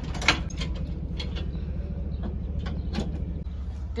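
Vehicle engine idling with a steady low pulsing rumble, broken by a few sharp metallic knocks and clanks, the loudest about a quarter second in.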